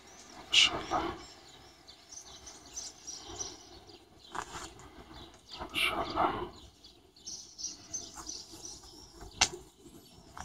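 Small birds chirping over and over, high and light. Two louder short sounds stand out, one about half a second in and one around six seconds in.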